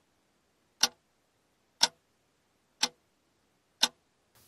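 Countdown-timer clock-tick sound effect: four short, sharp ticks, one each second, with silence between, counting down the seconds left to answer.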